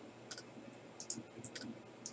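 A few faint computer mouse clicks, some in quick pairs, as the button to re-randomize a list is pressed again and again.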